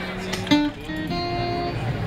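Acoustic guitar strummed through a PA system in a hall: a loud chord strikes about half a second in and rings on as held notes.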